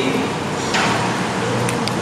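Busy eatery ambience: indistinct background chatter and clatter, with a brief sharper clatter about three-quarters of a second in.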